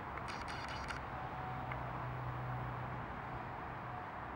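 Steady outdoor background noise. A brief dry rattle comes about half a second in, and a low hum rises in the middle and fades.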